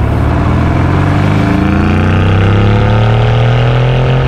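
Mercedes-AMG GT R Roadster's twin-turbocharged 4.0-litre V8 accelerating, its exhaust note climbing slowly and steadily in pitch.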